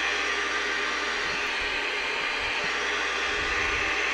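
CB radio receiver hiss: steady open-squelch static from the radio's loudspeaker with the volume turned up. The louder audio makes the radio draw more current, about 0.45 A on the meter instead of 0.34 A.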